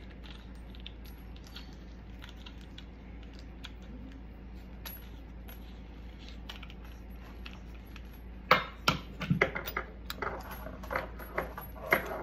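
Small metallic clicks and taps of faucet parts and supply-line fittings being handled and fitted together, light at first, then a quick run of sharper knocks and clinks in the last few seconds, the first of them the loudest.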